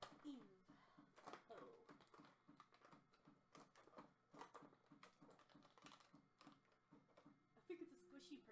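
Fingers and fingernails picking, clicking and tearing at the cardboard door of an advent calendar box, a quick run of small clicks and scratches, with a little murmured speech early on.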